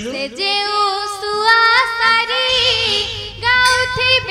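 A young girl singing a Danda Nacha folk song solo in long, held notes, with a wavering ornament on one note in the middle and short breaks between phrases.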